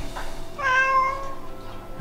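A domestic cat meowing once, a single drawn-out meow of about a second. It is crying for food while its bowl is empty.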